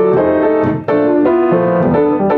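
Acoustic upright piano played solo in a jazz style: both hands strike quick successive chords, with a brief break just under a second in.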